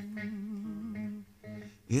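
Man humming a sustained, slightly wavering note between sung lines of a gospel song, breaking off briefly twice near the end.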